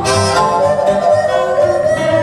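Blues duo playing live: acoustic guitar strummed under a harmonica cupped against a microphone, with the harmonica holding long, slightly sliding notes.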